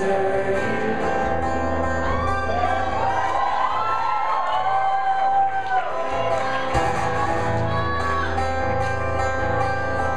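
Amplified acoustic guitar strummed steadily in a live solo performance, with a voice carrying a melody without clear words for a few seconds in the middle.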